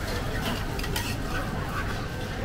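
Metal tongs clicking and scraping against a stainless-steel strainer as a freshly fried omelette is turned and lifted out, with several sharp clicks.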